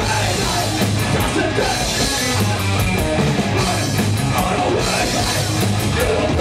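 Live heavy metal band playing: distorted electric guitars, bass guitar and a drum kit, with cymbal hits in a steady rhythm.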